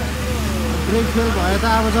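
A person talking from about a second in, over a steady low rumble of road vehicles and idling engines.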